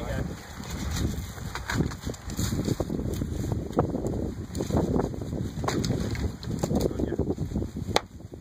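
Dry sticks, burnt bark and leaf litter crackling and rustling under hands, hooves and boots as the sheep is pulled free and scrambles away. Wind is rumbling on the microphone throughout.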